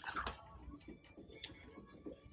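A few faint clicks and rustles of packaged merchandise being handled on a metal display peg in the first half second, then low store background noise.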